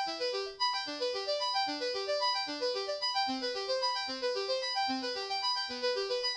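Martinic AX73 software synthesizer, an emulation of the Akai AX73, playing a fast arpeggio: short, evenly spaced notes, about five or six a second, climbing in repeating upward runs.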